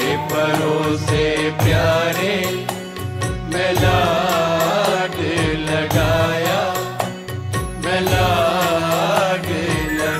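Wordless passage of a Sikh devotional shabad (Gurbani kirtan): a gliding, wavering melody over a steady sustained drone, with regular low drum strokes.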